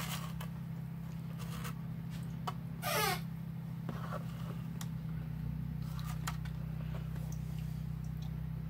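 Hands working wet paydirt in a plastic gold pan over a tub of water: faint scrapes and clicks of gravel against the pan, over a steady low hum. About three seconds in, a brief squeak that rises and falls in pitch stands out as the loudest sound.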